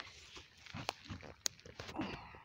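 Rustling and crackling in dry leaf litter and twigs, with a few sharp clicks, the strongest about a second in and again half a second later.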